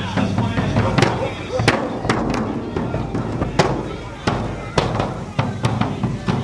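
A dozen or so sharp cracks at uneven intervals, over the voices of a street crowd.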